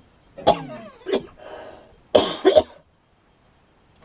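A man coughing several times in quick succession over the first three seconds, the last two coughs coming close together.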